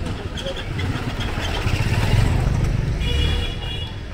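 A motor scooter passing close by, its engine growing louder to a peak about two seconds in and then fading, amid people's voices on the street.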